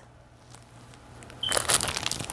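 Plastic packaging crinkling and rustling as it is handled, starting about one and a half seconds in after a quiet moment.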